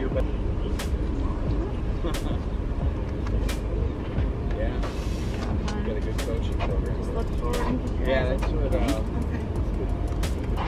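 Indistinct, muffled voices over a steady low rumble, with a few scattered clicks.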